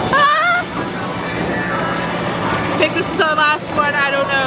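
Steady bowling-alley din with music in the background. A voice rises and wavers briefly at the start and again near the end.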